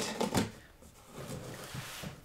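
Utility knife slicing through packing tape on a cardboard box in a few short strokes, then faint cardboard rustling as the box flaps are pulled open.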